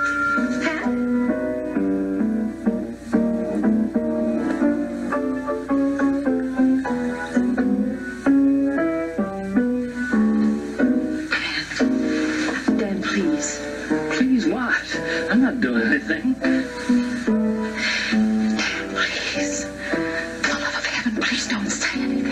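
A piano playing a slow tune note by note, heard off a television set's speaker; about halfway through the playing grows fuller and brighter.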